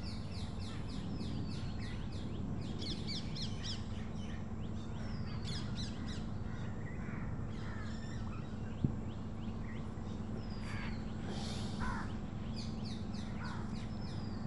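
Birds calling outdoors: several birds giving series of quick, high, falling chirps and calls throughout, over a steady low hum. There is a single sharp click about nine seconds in.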